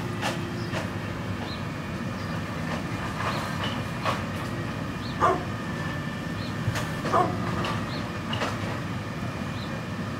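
Brindle pit bull barking in single barks every second or two, each bark falling in pitch, over a steady background rumble.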